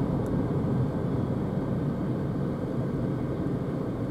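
Road and tyre noise inside the cabin of a Renault ZOE electric car slowing from about 63 to 46 km/h: a steady low rumble with no engine note.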